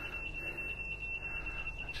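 Electrically operated engine hatch's warning buzzer giving one steady, unbroken high-pitched tone while the hatch rises.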